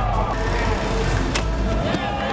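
Inline skates grinding along a metal rail, a rolling scrape, with a sharp clack about one and a half seconds in.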